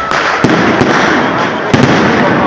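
Aerial firework shells bursting overhead: sharp bangs about half a second in and a louder double bang near the end, over continuous crackle.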